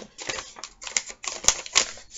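A paper receipt being handled and unfolded, giving a run of irregular crinkles and crackles with one sharp click about halfway through.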